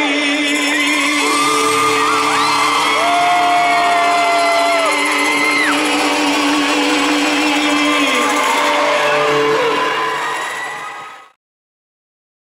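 Live pop band music with long held notes, fading out over the last two seconds into silence.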